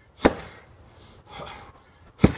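One sharp knock about a quarter second in, with a short ring-out, then a softer scraping rustle about a second later.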